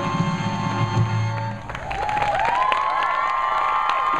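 A big-band swing number ends about a second and a half in, and an audience breaks into cheering and whoops right after.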